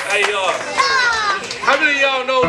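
Excited voices calling out and whooping in high, sliding pitches, with no clear words.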